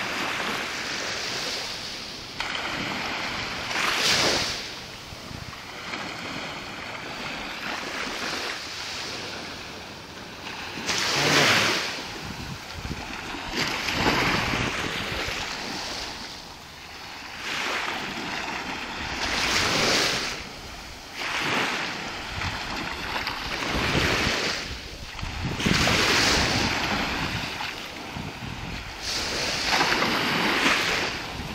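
Small waves breaking and washing up onto a sandy shore, the sound swelling and fading every few seconds.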